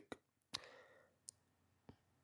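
Near silence with about four faint, short clicks spread through the pause.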